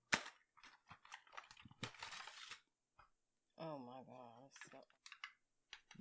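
Cardboard and plastic snack packaging being handled and opened: a sharp snap, then a run of small clicks and a brief rustle, with a few more clicks near the end.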